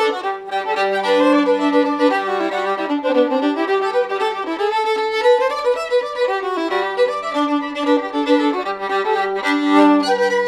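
Solo fiddle, a Lance Scott violin, bowed in a lively old-time tune, with a low drone note held under the melody through much of it. The fiddle has an open seam that gives it a pretty hefty buzz, which the player says can probably be heard.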